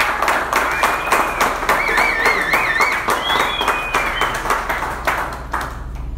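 Applause from a small room of people, many hands clapping irregularly, thinning out near the end. A high wavering call rises over the clapping for a couple of seconds in the middle.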